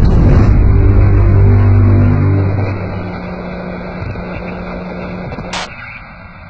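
A loud, low rumbling drone played through a sound system as a dramatic effect, holding for a couple of seconds and then fading away. A single sharp crack sounds near the end.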